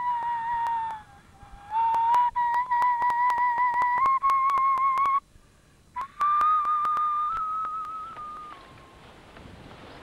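A small bone flute playing three long, slow held notes of a similar pitch, each bending slightly upward, with short pauses between them. The last note fades out about two thirds of the way in.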